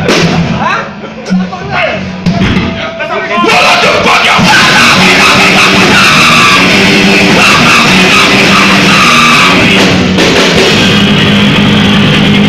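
A live rock band with electric guitars, bass and drum kit starts a song about three and a half seconds in and plays on loud and dense. Before that there are a few seconds of scattered sounds and voices.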